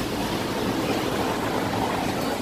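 Steady background hiss and hum of a busy restaurant seating area open to the street, with no distinct events.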